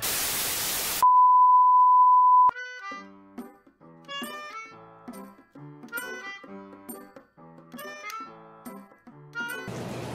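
Television static hiss for about a second, then a steady high-pitched test-tone beep that cuts off abruptly after about a second and a half. A light tune of short notes follows as stand-by music for a 'technical difficulties' screen.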